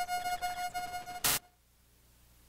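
Tail of a synthesized logo sting: sustained electronic tones ringing on and fading. About a second and a quarter in, a short burst of noise cuts them off, and near silence follows.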